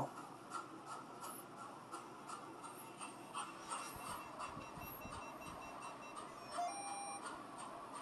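Faint room hush with scattered soft ticks, and a thin steady high electronic tone for about two seconds in the middle. Near the end comes a short electronic beep from a ghost-hunting device as it resets itself.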